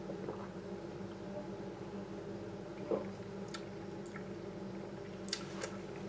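A man sipping beer from a glass and tasting it: faint swallowing and lip-smacking clicks, the clearest near the end, over a steady low hum.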